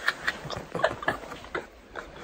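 Short, breathy bursts of stifled laughter, mixed with irregular clicks and rustles from a phone being handled against bedding.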